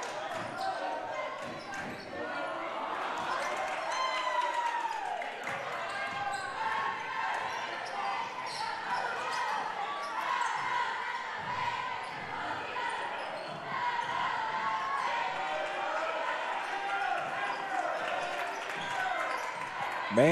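A basketball being dribbled on a gym's hardwood floor, among the voices of players and spectators, echoing in a large hall.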